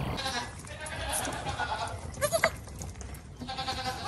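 Goat kids bleating: a few faint short calls, with one brief rising bleat about two seconds in.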